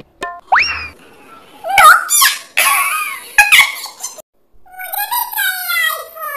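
Comedy sound effects: a quick rising glide, then short yelp-like pitched sounds and noisy bursts, ending with a long falling, wavering cry.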